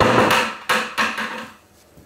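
Handling knocks and scrapes on a concrete shop floor: one loud knock right at the start that dies away over about half a second, then two softer knocks about a second in.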